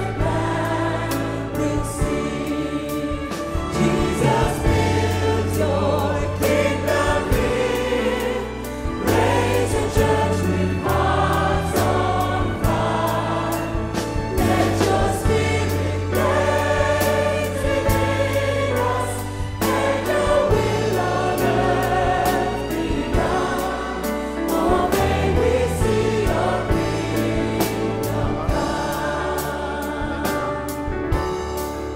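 A choir and band perform a Christian worship song. The voices sing over a bass guitar holding steady low notes, with a regular beat.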